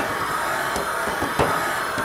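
Valve seat cutting machine turning a three-angle seat cutter at about 50 rpm in a valve seat of an MGB cylinder head: a steady machine noise with a faint high whine as the cutter is fed down towards depth. A single light click comes about a second and a half in.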